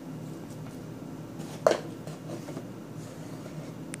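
Hands squeezing and kneading a soft mashed-potato and flour dough on a metal baking sheet, making quiet squishing noise, with one sharp tap about a second and a half in.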